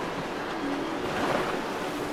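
Steady rush of wind and water noise on open water, with faint music in the background.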